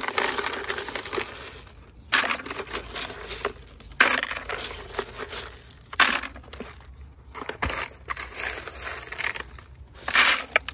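Handfuls of white marble chips being scooped and dropped into a planter, the stones crunching and clattering against each other. The sound comes in a run of separate pours, with fresh loud starts about two, four and six seconds in.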